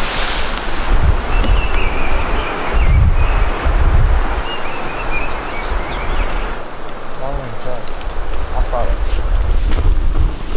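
Wind buffeting the microphone outdoors: low rumbling gusts over a steady rushing hiss, strongest around the first few seconds.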